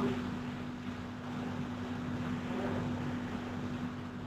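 Open-microphone noise on a web-conference audio feed: a steady hiss with a constant low hum underneath.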